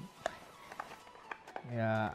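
Small cardboard box being handled and worked open by hand: one sharp click about a quarter second in, then a few faint ticks and rustles. A man's voice comes in near the end.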